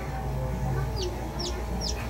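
Newborn chicken chick peeping: three short, high-pitched, falling peeps about half a second apart, starting about a second in.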